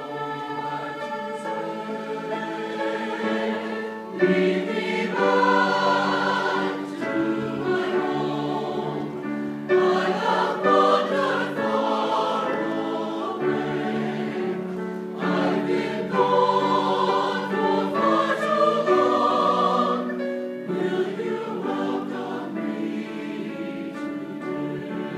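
Mixed-voice church choir singing in sustained chords, with the loudness swelling about four seconds in and again around ten and sixteen seconds.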